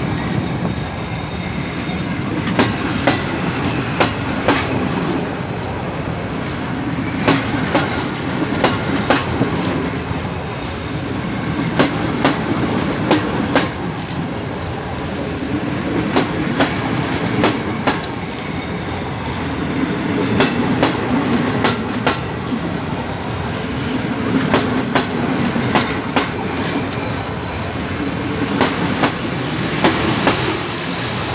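Passenger coaches of a long PKP Intercity TLK train rolling past, a steady rumble with the wheels clacking over rail joints in repeated clusters of sharp clicks.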